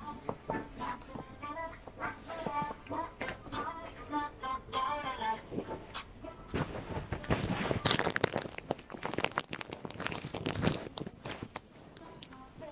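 Faint background music for the first few seconds. From about six seconds in, a few seconds of loud, crackly rustling as a bedspread and duvet are handled and straightened on a display bed.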